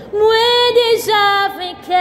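A woman singing a Haitian Creole gospel song solo, holding long notes with a short break about halfway through.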